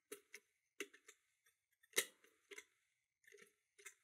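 Faint scattered clicks and scrapes of a lever pick lifting the spring-loaded levers of a 5-lever mortise lock under heavy tension, with the sharpest click about two seconds in. The levers spring back down instead of binding, so the lock is not setting.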